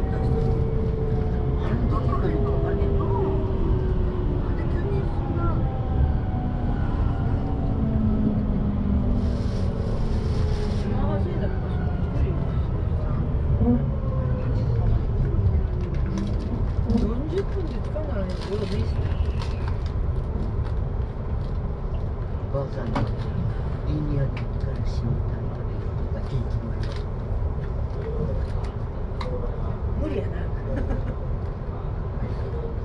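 Electric commuter train heard from inside the carriage: its motors whine down in pitch over the first dozen seconds as it brakes, over a steady low rumble that continues once the train stands, with scattered light clicks.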